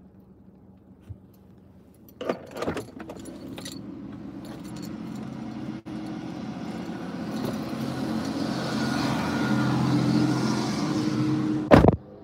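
Car door being opened with a few latch clicks about two seconds in, then a rush of outside noise over the idling car that grows steadily louder while the door stands open, ending in a loud door slam near the end.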